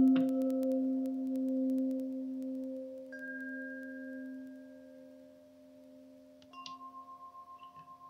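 Struck singing bowls ringing. A low tone is struck just before the start and slowly dies away, a higher tone enters about three seconds in, and another bowl is struck near the end, pulsing as it rings.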